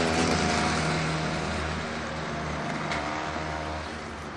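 A motor engine running with a steady low hum, slowly fading over the few seconds.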